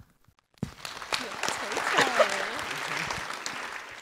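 Audience applauding, starting about half a second in and dying away near the end, with a voice or two heard over the clapping.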